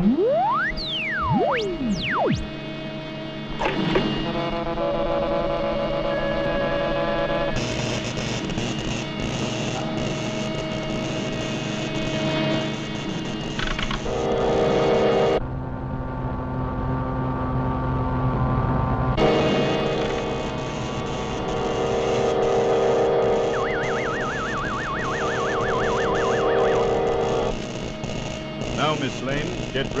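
Cartoon sound effects of an electrical machine being switched on and running: quick whistling glides up and down at the start, then a steady layered hum and buzz. A warbling tone wavers over it about two-thirds of the way through.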